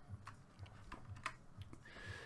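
Faint clicks of a computer keyboard and mouse: several separate key and button presses, with a low hum under them.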